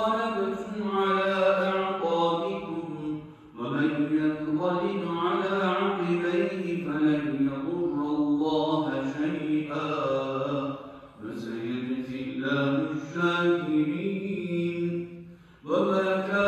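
A man chanting Quran recitation in Arabic, in long melodic phrases with held, ornamented notes. Three short pauses for breath: about three seconds in, about eleven seconds in, and just before the end.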